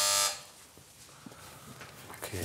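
An electric doorbell buzzer gives one short, loud buzz that stops about a third of a second in.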